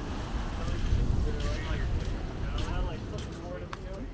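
Passers-by talking, their voices not clear enough to pick out words, over a low rumble of wind on the microphone.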